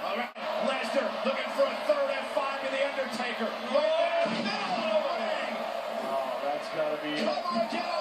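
Televised wrestling match audio: a commentator talking continuously, with arena crowd noise faintly beneath.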